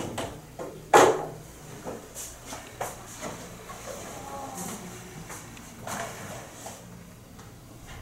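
A single sharp knock about a second in, then scattered light clicks and the rustle of paper being handled, with faint voices in the background.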